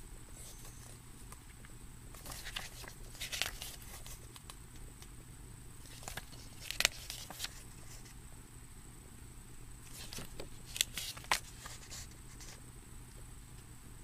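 Pages of a paper booklet being turned by hand, with short rustles and flicks in three bursts about four seconds apart.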